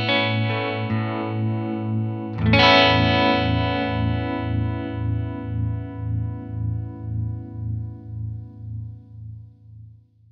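Electric guitar played through a Maestro Mariner Tremolo pedal: a held chord pulsing in volume, then a new chord struck about two and a half seconds in. The new chord rings out and fades away, throbbing evenly a little under twice a second.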